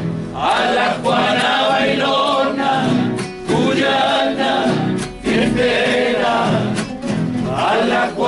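A group of men's voices singing a Cuyo cueca together to several strummed acoustic guitars, in phrases with short breaths between them.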